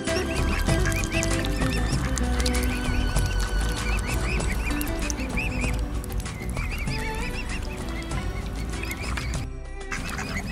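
Mute swan cygnets peeping, a long run of short high calls repeating a few times a second, over background music.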